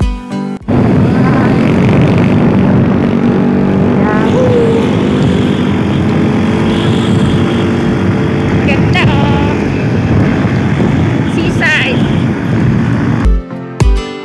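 A motorcycle's engine runs steadily under way, mixed with heavy wind rush and a few brief voices. Background music cuts off just under a second in and comes back near the end.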